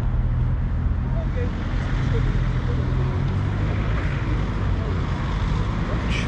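Steady low hum and rumble of street traffic, with a vehicle engine running nearby.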